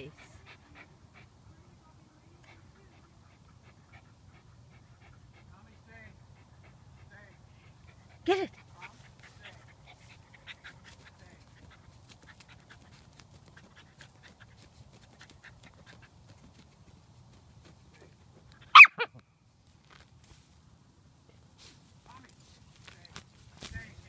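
Cairn terrier digging for a mole, tearing grass out by the roots, with faint scratching and rustling throughout. Two short, sharp dog barks cut in, one about 8 s in and a louder one about 19 s in.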